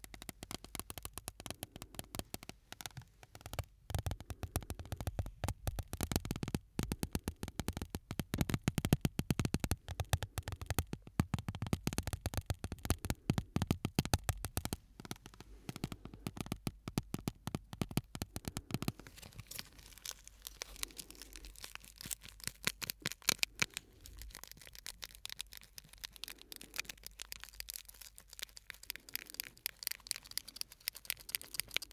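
Shards of broken glass handled close to the microphones, giving a dense run of small clicks, taps and scrapes as the pieces touch and rub. The clicking is busiest for the first two-thirds and grows sparser after about nineteen seconds.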